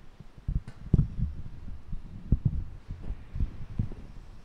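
A series of irregular low thuds and knocks, about ten in four seconds, the loudest about a second in.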